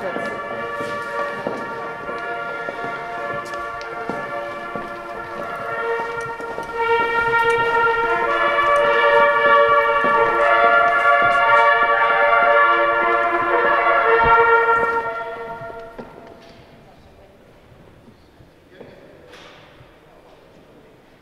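A fanfare played on ceremonial herald trumpets: held brass chords that change from note to note, swelling louder about seven seconds in and ending about fifteen seconds in, leaving only the faint sound of a large hall.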